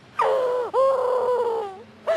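A young woman's high, drawn-out theatrical wail on an 'oh', part of an overdone dramatic recitation. It dips sharply in pitch partway through and fades out after about a second and a half.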